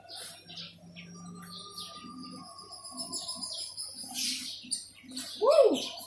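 Small birds chirping in the background: scattered short high chirps and a long thin whistle through the middle. A short, louder sound with a rising-then-falling pitch comes near the end.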